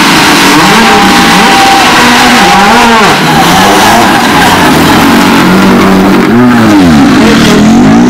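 Ford Fiesta rally car engine revving loudly as the car pulls away, the revs rising and falling several times, with one big blip about six seconds in.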